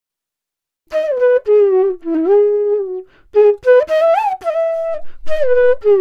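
A flute playing a short melodic phrase of held notes that glide and bend from one pitch to the next, starting about a second in, with a brief pause near the middle.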